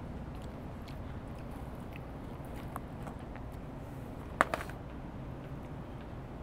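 A person eating fries, with faint chewing and small ticks over a steady low street rumble. A sharp click, with a smaller one just after it, about four and a half seconds in.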